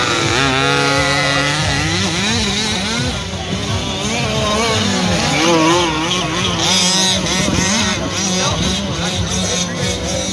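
Small two-stroke petrol engines of several large-scale RC buggies running around a track, their pitch climbing and dropping irregularly as they are throttled up and back off, overlapping one another.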